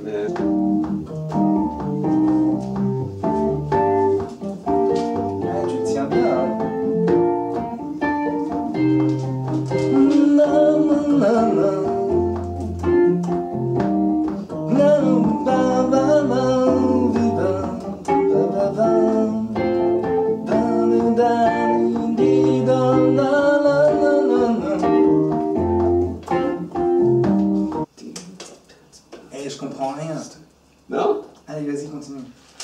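Nord stage keyboard played with both hands: chords and a melody over a bass line of low held notes. The music stops suddenly about two seconds before the end.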